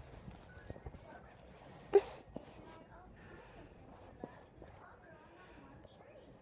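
A young child's small vocal sounds and giggles close to the microphone, with one short loud burst about two seconds in, amid light taps and rustles against the phone.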